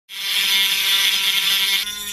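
Small handheld rotary tool running at high speed: a steady whine with many overtones that drops a little in level near the end.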